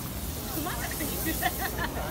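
Scallops sizzling on a hot flat-top griddle, a steady hiss, under the chatter of nearby voices.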